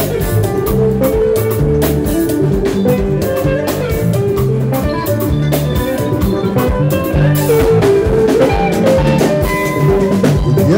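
Live highlife band playing: electric guitar lines over a steady bass line and drum kit.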